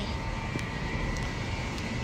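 Steady low rumble of city street noise, with no clear single event.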